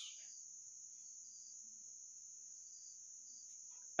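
Quiet room tone under a faint, steady high-pitched whine, with a soft brief rustle near the end.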